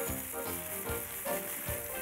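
Multicoloured loop cereal pouring from a clear plastic container into a bowl: a steady rustling hiss of many small pieces falling.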